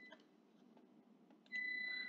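Near silence, then about a second and a half in a steady high-pitched electronic whine comes in.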